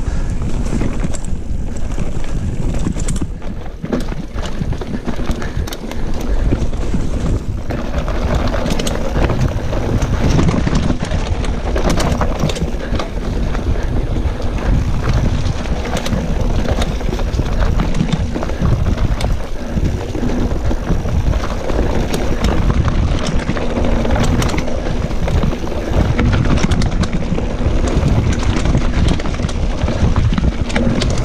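Mountain bike ridden fast over a rough dirt trail: wind buffeting the microphone and tyres rolling on the ground, with frequent rattles and knocks from the bike over bumps.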